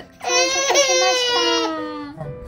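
An infant's single long, high-pitched fussy cry, wavering and slowly falling in pitch over about a second and a half.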